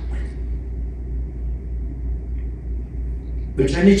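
Steady low rumble in the room during a pause in a man's talk; his voice comes back near the end.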